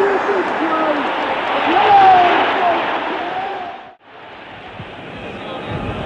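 Stadium crowd cheering and shouting as a try is scored, loudest about two seconds in, then fading and cut off abruptly about four seconds in; quieter crowd noise follows.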